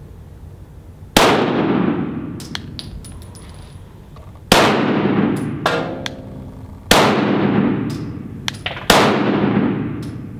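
Four single pistol shots from a Walther PDP, spaced two to three seconds apart, each with a long echo off the walls of an indoor range. Small clicks fall between the shots.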